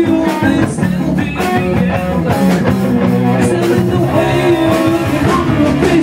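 Rock music led by an electric guitar, played on a Stratocaster-style guitar, over a full backing.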